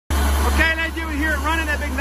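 Sullair 900H towable air compressor's diesel engine running with a steady low drone, with a man talking over it from about half a second in.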